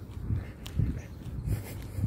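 Footsteps on a walk: a series of low, dull thuds, about one every half second to second.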